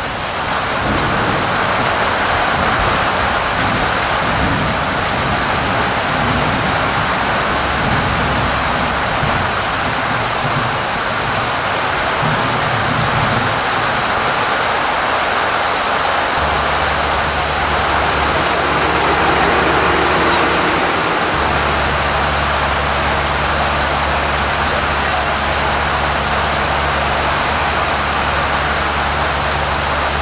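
Loud, steady rushing noise spread evenly from low to high. A low steady hum comes in abruptly about halfway through and grows fuller a few seconds later.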